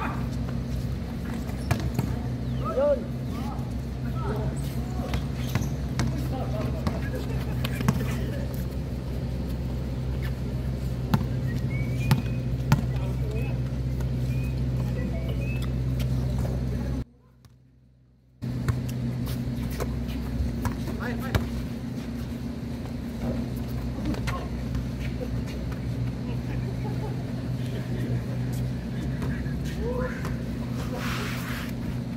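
Outdoor basketball court sound of a pickup game: players' voices calling out now and then and occasional knocks of the ball, over a steady low mechanical hum. A little past the middle the sound cuts out to near silence for about a second and a half, then resumes.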